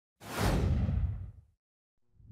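Whoosh transition sound effect: a sudden rush of noise about a quarter second in that sweeps down from hiss to a low rumble and dies away by about a second and a half.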